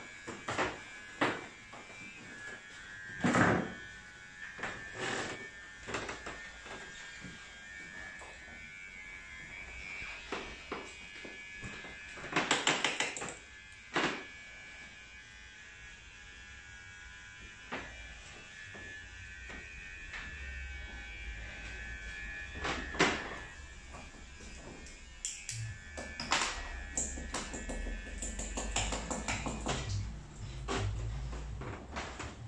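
Barbershop room sounds: scattered clicks and knocks over a faint, steady high-pitched hum, with a short run of rapid rubbing strokes about twelve seconds in.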